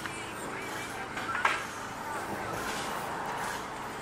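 Low outdoor background with faint voices and one short click about a second and a half in.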